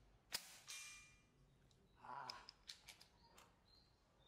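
A single shot from an FX Impact MK2 .22 PCP air rifle: one sharp crack about a third of a second in, followed by a fainter second crack. About two seconds in comes a brief rustle and several light clicks.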